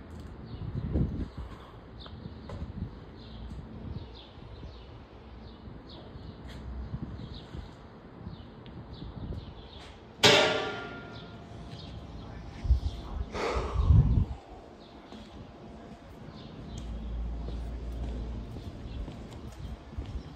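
A sharp clang that rings for about a second, heard about ten seconds in, then a second, weaker one about three seconds later with low thumps around it, over steady outdoor background noise.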